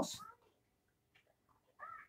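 Mostly near silence, with one short high-pitched call that rises and falls near the end.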